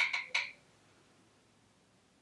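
Three quick scratchy dabs of a makeup brush in loose translucent powder in the first half second, then near silence: room tone.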